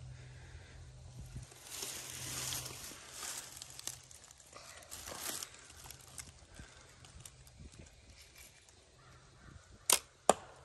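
Several seconds of faint noise while a youth compound bow, a Bear Archery Royale, is drawn and held at aim, then near the end a single sharp snap as the bow is shot.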